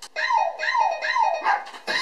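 A rhythmic run of short, high yelping cries, each falling in pitch, about three per second, from a TikTok clip's audio track.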